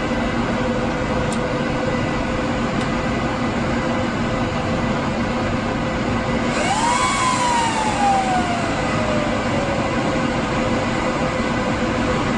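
Steady fan noise and hum from a rack of running Apple Xserve cluster nodes. About six and a half seconds in, a freshly powered-on node's fans spin up with a whine that rises quickly and then falls slowly over about four seconds as the server boots.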